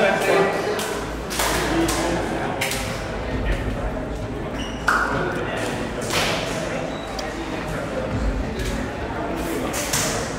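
Palm-on-palm smacks of high-fives and hand clasps, a handful of sharp slaps spread through, over indistinct chatter of men's voices.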